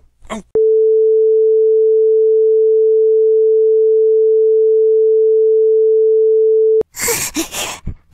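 A steady, single-pitched broadcast test tone, the tone that goes with colour bars as an off-air or technical-difficulties signal, held for about six seconds before cutting off suddenly. It is followed near the end by breathy voice sounds.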